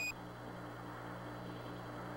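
A short high beep of Mission Control's Quindar tone, marking the end of a transmission, cuts off just after the start. Then comes the steady hiss and low hum of the Apollo air-to-ground radio link with no one talking.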